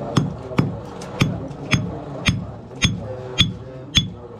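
Hand hammer striking thin metal on a mushroom-shaped metal stake: about two sharp, ringing blows a second, evenly paced, as the piece is shaped.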